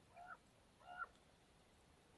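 Two short, faint croaks of a common raven, a little over half a second apart, against near silence.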